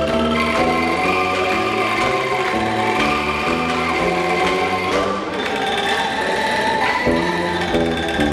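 Angklung ensemble playing a tune in chords: many shaken bamboo angklung sounding sustained notes over low bass notes, the chords changing about every half second to a second.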